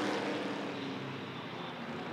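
Engines of a pack of Sportsman stock cars droning as the field races around the oval, the sound slowly fading.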